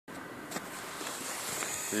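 Steady outdoor background noise with a single short knock about half a second in, typical of a handheld camera being moved; a voice begins right at the end.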